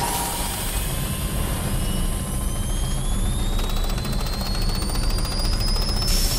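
A dense, steady low rumble with a thin high whine rising slowly and steadily in pitch.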